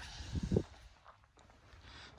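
Quiet room tone, with a brief low voice sound, two short hums, about half a second in.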